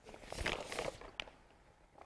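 Faint rustling of a gift bag being rummaged through as items are pulled out, with a light click just over a second in.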